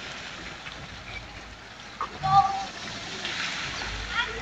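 Steady hiss of water spraying and splashing from a pool's water-play structure, with a short call from a voice about two seconds in.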